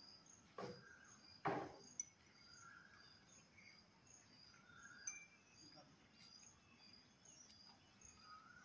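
Near silence with faint insect chirping, a short high chirp repeating evenly about twice a second. Two soft thuds about half a second and a second and a half in, with small clicks near two seconds and near five seconds.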